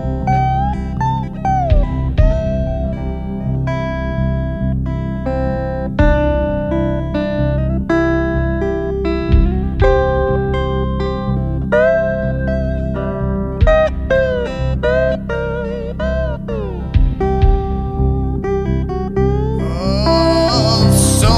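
Guitar solo in the instrumental break of a blues-tinged song: a single-note lead line with string bends and vibrato over a steady bass backing.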